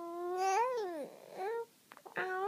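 Infant cooing: one long drawn-out vowel sound that rises a little, then falls and breaks off about a second in, followed by a short coo.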